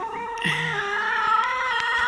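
Rooster crowing: one long crow held at a nearly steady pitch.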